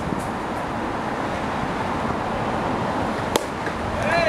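A bat hitting a pitched ball: one sharp crack a little over three seconds in, over a steady background hiss.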